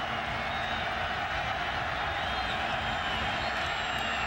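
Steady crowd noise from a large football stadium crowd, a continuous hum of many voices with a few faint whistles or whoops.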